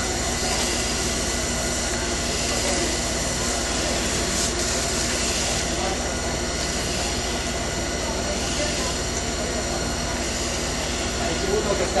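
A steady machine drone with hiss, holding an even level throughout.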